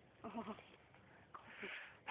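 A person's short, quavering moan, faint, about a quarter second in, followed near the end by a breathy exhale.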